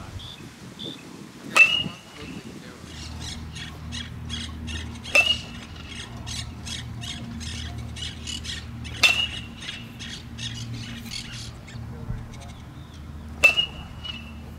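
Four ringing pings of a metal baseball bat hitting balls, about four seconds apart, as in batting practice. Birds chirp between the hits.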